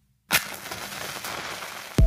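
A sharp crack, then a dense crackling hiss like static that eases off slightly.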